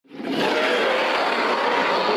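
A long, rough dinosaur roar sound effect for an animated theropod in a video intro.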